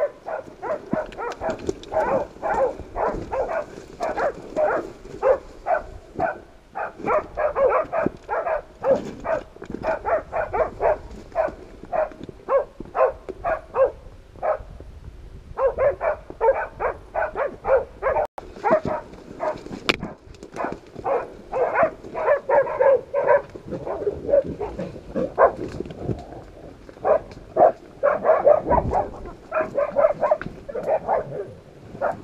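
Pig-hunting dogs barking rapidly and steadily, about three barks a second, bailing (baying) a wild pig; the barking breaks off for a second or so midway, then carries on.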